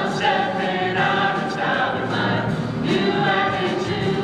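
A small vocal jazz ensemble singing together in harmony, a swing tune performed live on stage.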